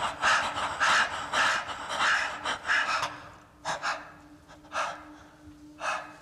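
A person panting heavily, with quick breaths about twice a second. After about three seconds it slows to three single sharp breaths about a second apart.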